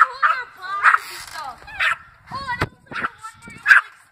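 A dog barking: several short barks spaced about a second apart.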